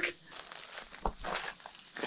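Steady high-pitched drone of insects, with a few footsteps.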